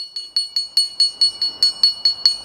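Small handheld xylophone, its highest (pink) bar struck again and again, about five quick strikes a second, giving a bright, high ringing note.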